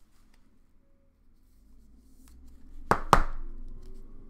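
Clear plastic card case being closed around a sleeved trading card: two sharp plastic clicks in quick succession about three seconds in.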